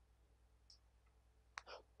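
Near silence: faint room tone, with one brief soft click about one and a half seconds in.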